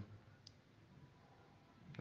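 Near silence: faint room tone, with one small, faint click about half a second in.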